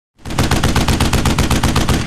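A burst of rapid automatic gunfire, about a dozen shots a second, starting a moment in and running steadily for nearly two seconds.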